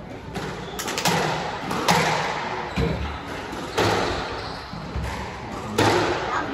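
Squash ball being hit by rackets and striking the court walls in a rally: a series of sharp hits about a second apart, each echoing around the court.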